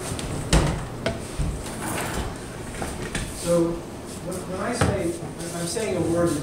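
Low voices of people talking in a room, with a few sharp knocks and clatter of things being handled in the first two seconds.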